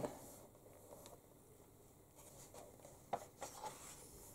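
Faint rustle of paper as book pages are handled and turned, with a few soft brushing strokes about a second in and again about three seconds in.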